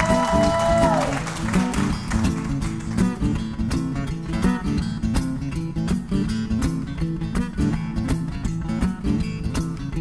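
Acoustic guitar strummed in a steady rhythm. A voice holds one note over it for about the first second.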